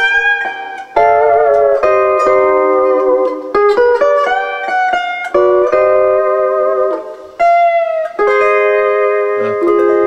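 Double-neck Fender Stringmaster steel guitar playing a run of picked chords, each left to ring and held, with short bar slides between some of them. Near the end a chord slides slightly down in pitch and is then held.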